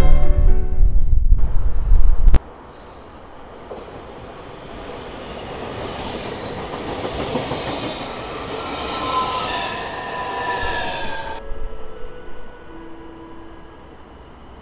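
Electric passenger train passing close by, its running noise rising and falling, with thin metallic squeals that slide slightly down in pitch near the end. A loud low rumble fills the first two seconds and cuts off suddenly.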